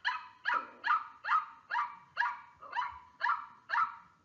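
A small dog or puppy yapping: a quick, even series of about nine short, high barks, roughly two a second.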